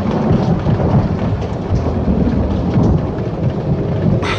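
Heavy rain with a low, uneven rumble of thunder.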